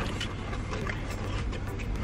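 Steady low hum of a car cabin, with a few faint clicks.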